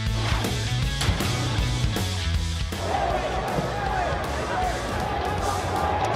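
Background music with a deep, sustained bass and a steady beat, the kind used behind a highlights countdown graphic.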